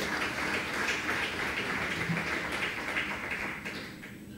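Audience applause that fades out near the end.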